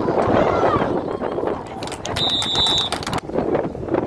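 Spectators shouting, then a referee's whistle blown once for about a second, shrill and fluttering, a little past halfway through, as the play is whistled dead.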